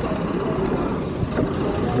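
Steady street traffic noise with a vehicle engine running.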